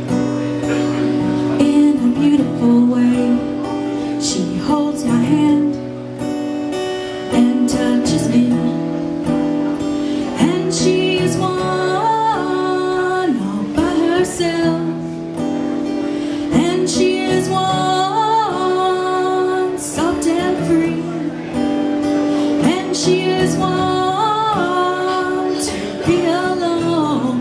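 Acoustic guitar strummed steadily under a woman's singing voice, which comes through most clearly in the second half.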